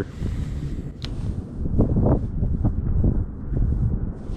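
Wind buffeting the microphone: a loud, uneven low rumble that swells and dips in gusts. A single sharp click sounds about a second in.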